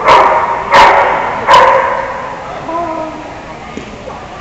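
A dog barking three times, loud and sharp, about two-thirds of a second apart, echoing in a large metal-walled arena.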